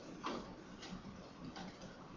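Three faint, irregular clicks over a low steady hum. The first, about a quarter second in, is the clearest.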